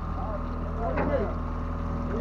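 Steady low drone of a fishing boat's engine running at idle, with faint distant voices over it.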